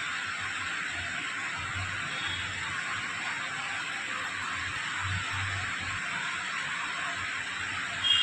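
Steady background hiss of room tone, with a few faint low bumps now and then.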